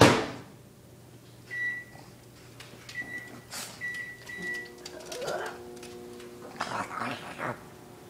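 A sharp thump like a door shutting, then four short electronic keypad beeps, after which an appliance starts up with a steady hum.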